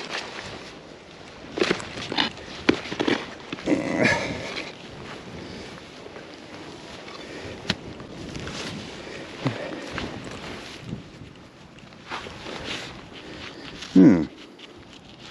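Gloved hands and a hand digger working loose soil and turf in a dug hole: intermittent scraping, rustling and soft knocks, busiest in the first few seconds, with a single sharp click about halfway through.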